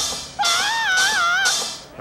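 A single wavering, whistle-like tone, about a second long, that bends up and down a few times: a cartoon sound effect.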